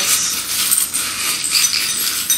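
A hand rummaging through a bowl of small metal charms, which clink and jingle against each other in a continuous, busy clatter.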